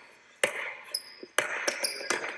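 Basketball dribbled on an indoor gym court: two sharp bounces about a second apart, each with a short echo off the gym walls.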